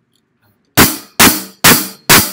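Drum kit: after a short silence, three loud accented hits about half a second apart, each with bass drum under a ringing cymbal, opening the groove.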